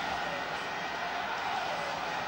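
Steady crowd noise from a football stadium, an even wash of many voices with no single loud event.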